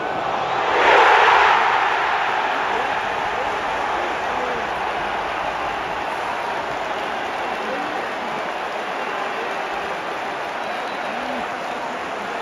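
Football stadium crowd erupting at a goal: a sudden roar swells about a second in, then settles into sustained cheering and shouting.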